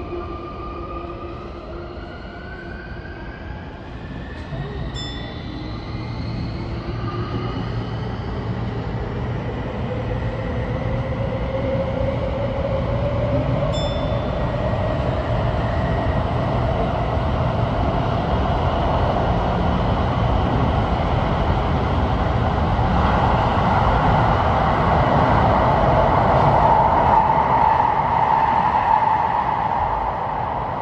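Sotetsu 20000 series electric train accelerating in a tunnel, heard from the driver's cab: the traction motors whine in several tones that climb steadily in pitch, while the rolling noise of the wheels on the track grows louder throughout.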